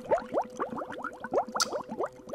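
Cartoon sound effect of liquid bubbling in an open can: a quick run of short rising blips, several a second, over a faint steady hum.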